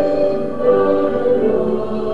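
Slow sacred music with voices singing long, held notes.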